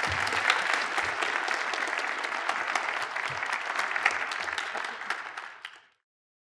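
Audience applauding, a dense patter of many hands clapping that fades out near the end.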